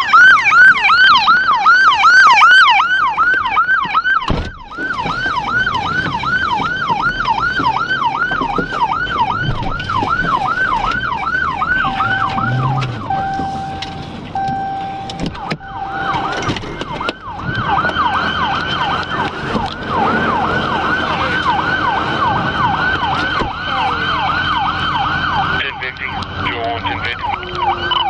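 Police car siren on the yelp setting, its pitch sweeping rapidly up and down about three times a second. Partway through, four short steady electronic beeps sound over it.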